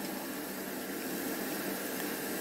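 Steady, even background hiss with no distinct sounds in it.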